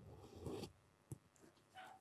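Faint rustling of things being handled, then a single sharp click about a second in and a brief soft rustle near the end.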